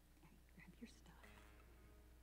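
Near silence: faint whispering voices in the first second, then a faint steady held note.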